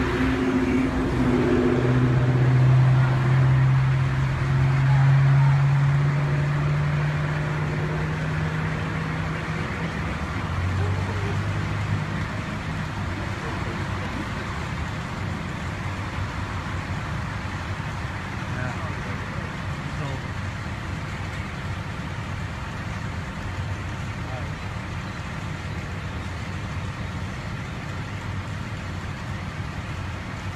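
Road traffic: a car engine hums past in the first several seconds, its pitch slowly rising, then steady traffic noise continues.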